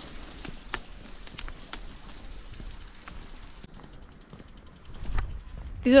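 Riding a bicycle along a wet road: a steady hiss with scattered light clicks, and a low rumble building near the end.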